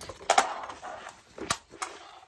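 Fabric drum stick bag and its shoulder strap being handled and turned over: rustling cloth with a few sharp clicks and knocks from the metal snap-hook clips and the bag on the wooden floor, the loudest about a third of a second in and again around a second and a half.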